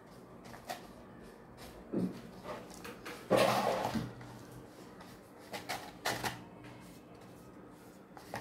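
A stiff paper cone being handled on a cardboard base: scattered light taps and clicks, with a louder rustle of paper about three and a half seconds in.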